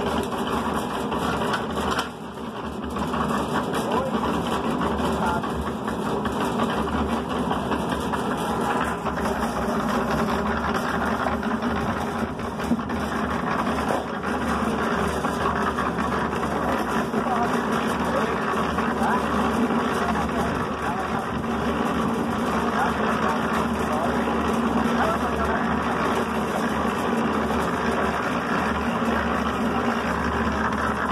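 Concrete mixer running steadily, its drum turning and churning a wet lime-and-cement render mortar as sand is added.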